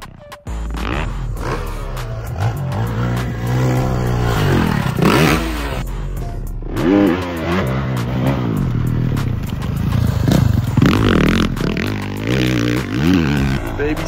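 Dirt bike engines revving, the pitch climbing and falling again and again as the throttle is opened and shut, after a brief dropout just after the start.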